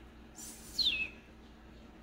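A single short, high chirp that slides down in pitch, about a second in, just after a brief hiss.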